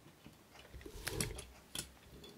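1/64 die-cast model cars being shuffled and rolled across a display mat by hand: faint rolling and rattling of their small wheels with a few light clicks.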